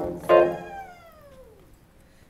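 Electronic keyboard: two chords struck, then the last note bends smoothly downward in pitch as it fades away to quiet.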